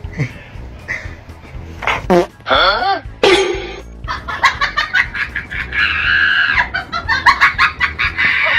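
A Siberian husky vocalizing, a loud wavering howl that bends up and down in pitch for about two seconds, starting about two seconds in. Then, from about halfway, a rapid run of short clucking calls.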